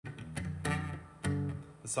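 Acoustic guitar strummed in a few chords, each left to ring on. A man's voice begins to speak right at the end.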